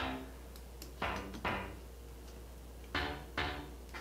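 Digital synth bass sample from a Korg M1 software plugin, played back quietly: two short notes about half a second apart, then the same pair again two seconds later.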